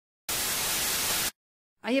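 A burst of even white-noise static, about a second long, that starts and stops abruptly: a static sound effect between the intro logo and the opening cartoon scene.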